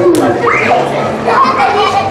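Young children's voices calling out while they play, with one call rising in pitch about half a second in, over a steady low hum.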